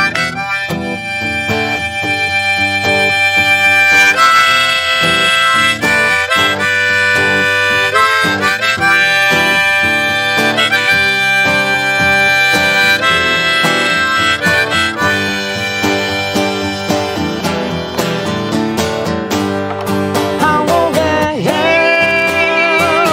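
Harmonica solo of long held, bending notes over a strummed acoustic guitar. Near the end the harmonica drops out and a man's voice starts singing again.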